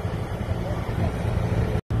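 Vehicle engine running steadily at low speed, a low hum with some road noise. Near the end the sound drops out completely for an instant.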